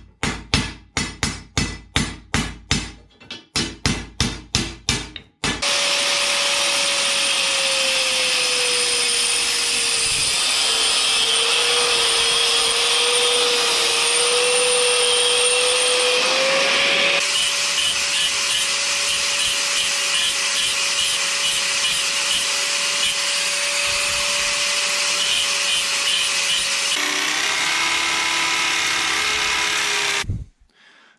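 A hammer beating the end of a steel tube flat on a concrete floor, a quick run of blows about three a second. Then an angle grinder runs steadily, cutting the steel with a high whine, and near the end a power drill takes over.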